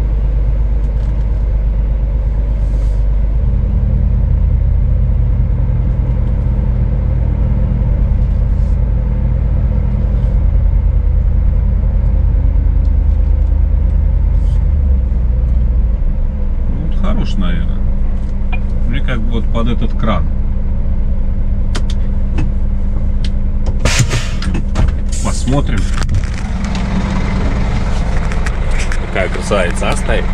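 A large engine running steadily, a deep rumble that steps up about four seconds in and eases off around the middle. Sharp metallic knocks and clanks come in the second half.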